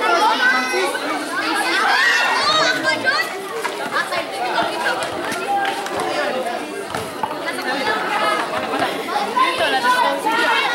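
Crowd of spectators chattering and calling out at once, many voices overlapping, around an outdoor basketball court.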